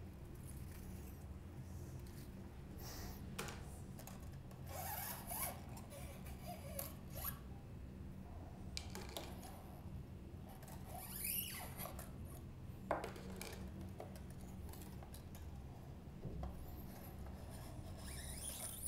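Old steel electric-guitar strings being pulled free at the bridge and tailpiece of a Fender Jaguar: faint scattered scraping and rustling of the loose strings, with a few small metallic clicks, over a low steady hum.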